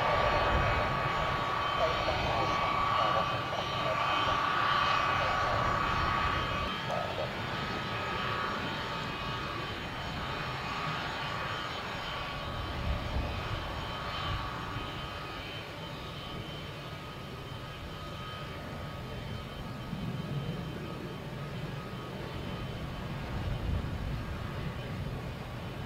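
F-15 jet engines running with a steady high turbine whine over a rumble, loudest for the first several seconds and then slowly fading.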